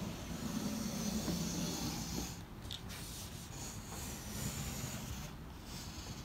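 Wooden jig sliding and rubbing over paper on a plywood board as it is swung along to mark a curve, a continuous scraping rub that is loudest in the first couple of seconds.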